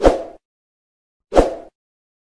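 Two short cartoon pop sound effects a little over a second apart, the kind laid over an animated subscribe button.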